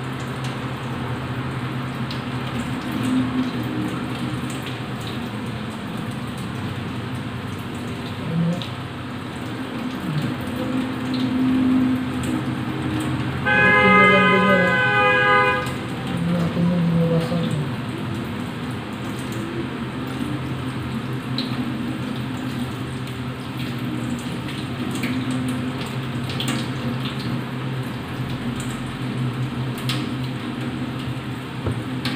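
Steady rush of a kitchen sink tap running while squid are cleaned by hand. About thirteen seconds in, a steady horn-like tone sounds for about two seconds.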